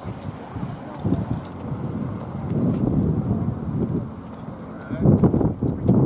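Outdoor street ambience: road traffic and passing bicycles, with wind on the microphone and the voices of passers-by, growing louder about five seconds in.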